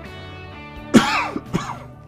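A man coughing twice into his fist, about a second in and again half a second later, over steady background guitar music.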